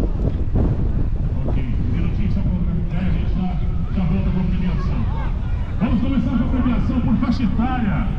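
Indistinct voice carried from a distance, like an announcer over a loudspeaker, coming and going from about a second and a half in, with wind rumbling on the microphone throughout.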